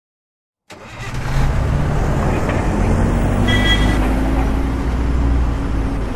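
A motor vehicle's engine starting up suddenly and running loudly, its low pitch slowly climbing, with a short higher tone about three and a half seconds in.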